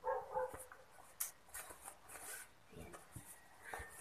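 A dog's faint short cry right at the start, followed by a few scattered light clicks.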